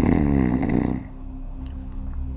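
A man's loud snore, lasting about a second.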